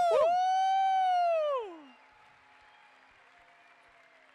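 A man's long, high 'woo!' whoop through a handheld microphone: it dips at the start, holds one steady pitch for about a second and a half, then slides down and stops. After it comes only the faint background of a large hall.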